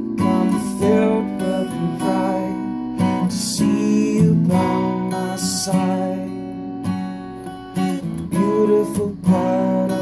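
A steel-string acoustic guitar strummed in chords, with a man singing over it at times.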